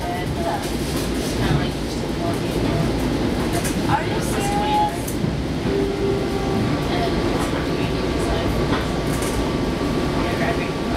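Long Island Rail Road commuter train heard from inside the car while running at speed: a steady rumble of wheels on rail. A faint steady whine comes in about six seconds in.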